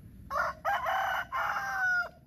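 A rooster crowing once: a three-part call starting about a third of a second in. The last part is long and held on a nearly steady, slightly falling pitch.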